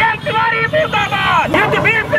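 A man shouting protest slogans into a handheld microphone, with other marchers' voices and street traffic behind.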